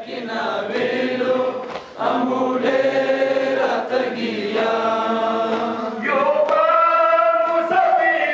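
A crowd of men chanting a mourning lament together in long, drawn-out sung lines, with a few sharp knocks scattered through.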